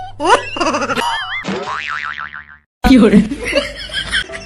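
Cartoon "boing" spring sound effect: quick rising sweeps, then a long wobbling warble that fades out about two and a half seconds in.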